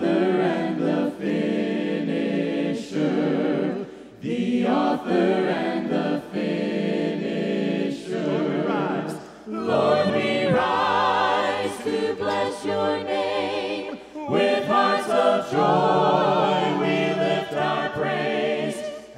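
A group of voices singing a hymn a cappella in harmony, led by five singers on microphones, with no instruments. The phrases come about every four seconds, with a short break for breath between them.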